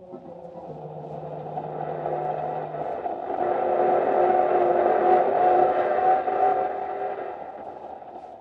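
Radio-drama sound effect of a car motor running, swelling to its loudest about five seconds in and then fading down.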